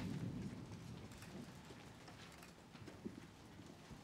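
Faint, scattered light knocks and clicks of papers and objects handled at a table, over quiet room tone. A low rumble dies away in the first second.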